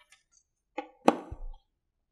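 A magnetic strip clacking onto a whiteboard over a paper sheet: a light click, then a louder knock with a brief low thud about a second in.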